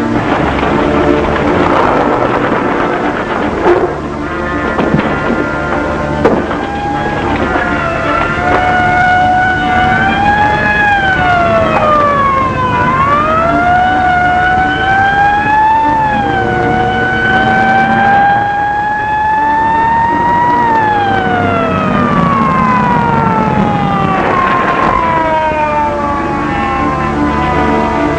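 A police siren wailing over orchestral film music. It starts a few seconds in, rises and falls several times, and winds down slowly in pitch near the end.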